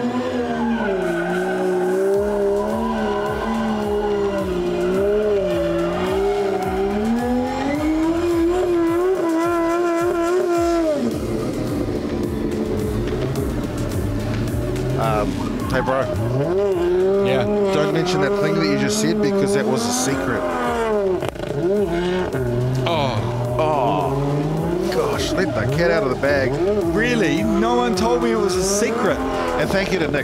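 High-revving drift car engines at full throttle, the engine note rising and falling as the drivers work the throttle, with a sharp drop about eleven seconds in. Tyres screech under heavy wheelspin as the cars slide sideways through the corners, smoking the rear tyres.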